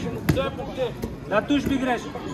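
People's voices calling across a large hall. Two short, sharp knocks cut through them, about a third of a second in and again about a second in.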